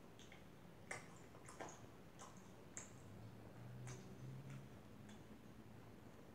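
Faint mouth sounds of chewing pizza: scattered soft clicks and smacks at irregular intervals, about eight in six seconds.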